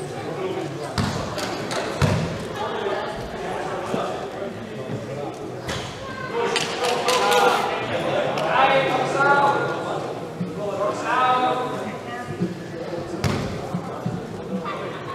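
Wheelchair basketball being played in an echoing gymnasium: a basketball bouncing on the wooden court a few times, with loud calls from players in the middle of the stretch over general crowd noise.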